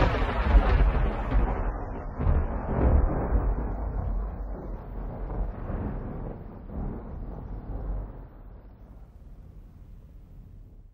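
Thunderclap sound effect: a long low rumble that starts loud and slowly fades away over about ten seconds.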